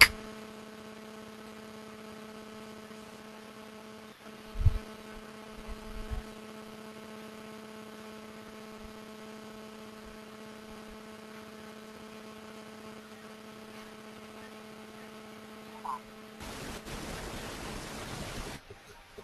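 Steady electrical hum, several pitched tones at once, on an open conference-call audio line just after the participants' microphones are unmuted, with two low thumps about four and a half and six seconds in. Near the end the hum cuts off and gives way to a short burst of hiss.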